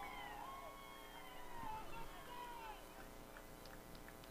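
Faint, distant high-pitched shouts and cheers from a group of girls, overlapping one another, celebrating a goal that has just been scored.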